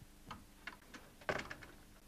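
A steel pot and other kitchenware handled on a wooden countertop: a few light knocks and clinks, the loudest about a second and a bit in.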